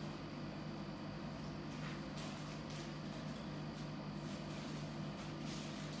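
Quiet room tone with a steady low hum, and a few faint, brief scratches of a fine-tip pen drawing a line on a paper tile.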